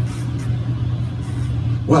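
A steady low hum with no speech over it; the voice returns just before the end.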